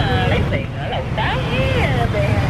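A woman's voice talking over a steady low rumble of city street traffic.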